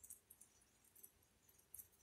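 Near silence: faint rain outdoors, with only a few soft high-pitched ticks of patter.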